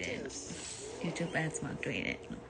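A woman's voice in short snatches, mixed with scattered clicks and rustle.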